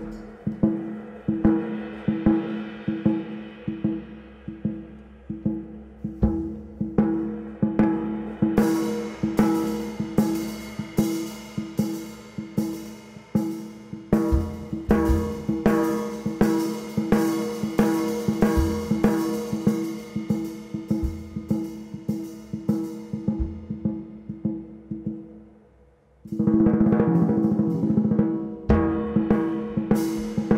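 Jazz drum kit solo: drums struck in a loose, busy pattern, with cymbals coming in about eight seconds in. Near the end the playing briefly drops away, then a fast mallet roll on the drums follows.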